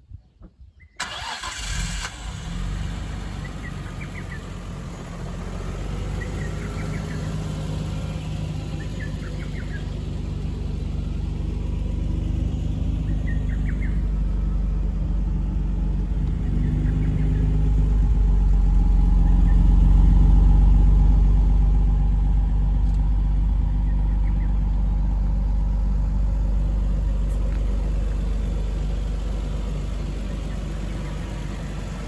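Nissan Skyline R34 GT-R V-Spec II Nür's RB26DETT twin-turbo straight-six starting about a second in, then idling steadily. The idle grows louder a little past two-thirds of the way through, then eases slightly.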